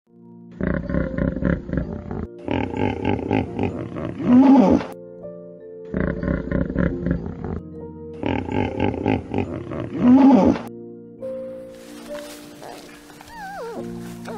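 Hippopotamus wheeze-honk call: a run of deep, rapid grunting pulses that builds to a loud honk, heard twice, over background music with steady held notes. Only the music continues near the end.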